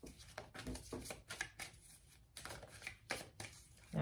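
Tarot cards being shuffled and handled by hand: a run of short, irregular swishes and flicks of card stock.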